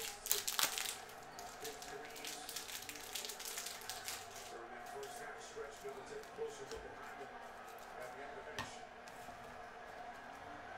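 Quiet rustling and light clicking of trading cards being handled and sorted by hand, with a louder rustle about half a second in and a single sharp click near the end.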